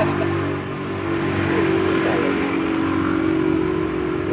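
A car engine idling steadily, an even low hum.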